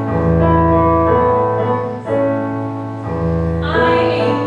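Piano accompaniment of a slow show-tune ballad, held chords changing about once a second, with a woman's solo singing voice coming in near the end.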